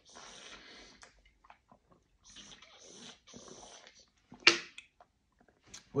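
Sipping through an Air Up scent-pod bottle's mouthpiece: three noisy sucking breaths of air and water, each about a second long. About four and a half seconds in there is a short sharp smack at the mouth.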